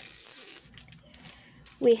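A brief rustle of trading cards and a foil booster-pack wrapper being handled, then lighter handling noise. A woman's voice starts near the end.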